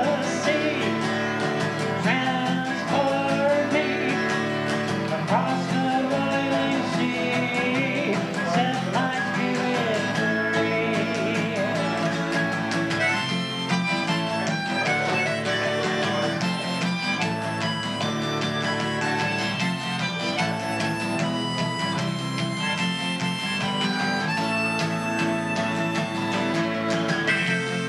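Acoustic guitar strummed through an instrumental break in a folk song, with a bending lead melody line over the chords for roughly the first ten seconds before the strumming carries on alone.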